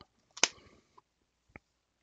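Handling clicks from a Blu-ray steelbook case: one sharp click about half a second in, then a few faint clicks and taps.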